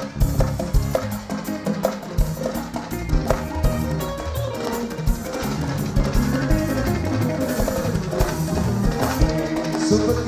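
Live mbalax band playing an instrumental passage: a drum kit with percussion carrying a dense, driving beat under electric guitar and keyboards.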